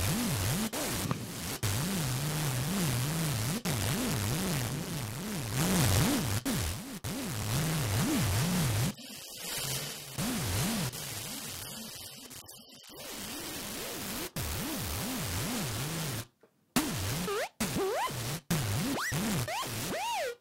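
ZynAddSubFX software synthesizer patch played from a MIDI keyboard: a harsh, heavily distorted noisy buzz whose pitch wobbles up and down about twice a second under an LFO, an attempt at a scratched vinyl record sound. About halfway through it thins out, and near the end it breaks into short stop-start bursts with rising pitch glides.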